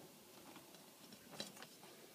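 Near silence, with a couple of faint ticks about one and a half seconds in as a steel ruler is laid on the leather.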